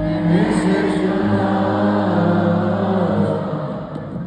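Live sierreño band playing in an arena, heard from high in the stands: guitars over long held low notes, the sound dropping away near the end.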